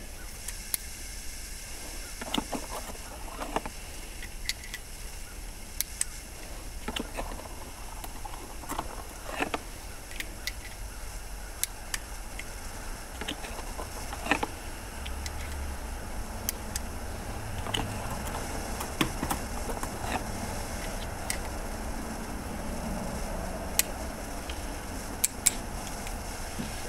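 Scattered light clicks from a Nagant M1895 revolver being handled and worked, with no shots fired, over a steady low background noise.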